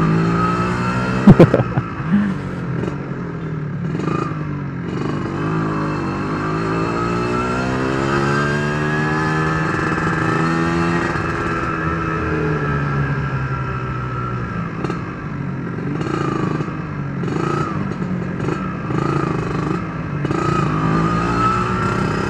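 Yamaha RXZ two-stroke single-cylinder motorcycle engine heard while riding, its note dipping, climbing for several seconds as the throttle opens, then easing off. A brief sharp knock about a second in.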